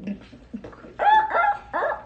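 A woman shrieking in high-pitched, wavering squeals of excitement, starting about a second in.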